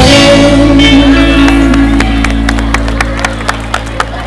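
Live reggae band letting the final chord of a song ring out, bass and guitars held and fading away. From about halfway a run of sharp, evenly spaced clicks comes in, about four a second.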